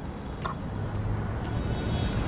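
Low, steady car rumble heard from inside the cabin, growing louder, with a couple of faint ticks.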